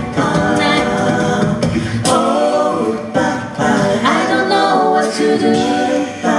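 A cappella vocal group singing in harmony into microphones, several voices at once with no instruments. The low bass part drops out about two seconds in, leaving the higher voices.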